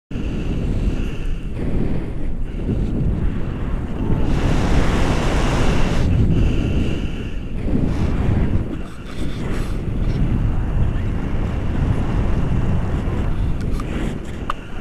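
Wind buffeting the microphone of a camera on a tandem paraglider in flight: a loud, low rush that rises and falls. It is strongest and hissiest from about four to six seconds in.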